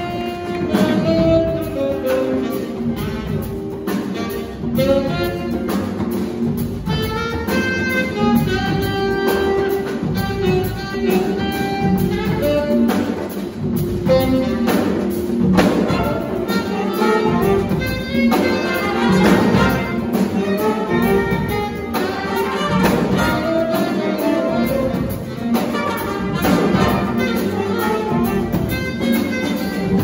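Jazz big band playing live: a saxophone section, trumpets and trombones over piano, electric guitar, double bass and drum kit, with the horns holding chords.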